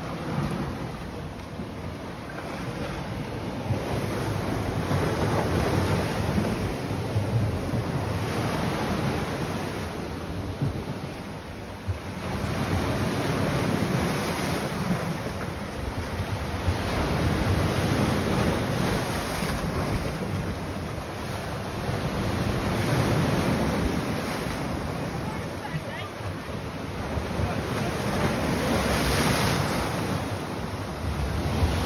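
Sea waves breaking and washing over rocky ledges, the surge swelling and easing every several seconds, with wind rumbling on the microphone.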